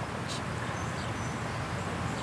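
Steady outdoor background ambience: an even low rumble and hiss, with a couple of faint, short high chirps about a second in.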